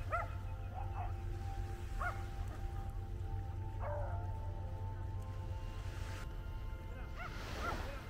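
Dogs barking a few short times in the distance, over faint background music and a low steady rumble.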